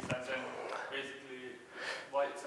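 Faint, distant speech: a student asking a question from the audience, far from the microphone.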